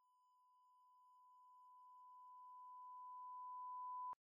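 Broadcast 1 kHz line-up test tone, the reference tone that runs with colour bars on a programme slate: one steady pure pitch, faint at first and growing steadily louder, then cutting off suddenly at the end.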